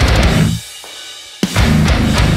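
Metalcore band playing with distorted guitars and drums. About half a second in the band stops abruptly for roughly a second, then comes back in together on a sharp hit.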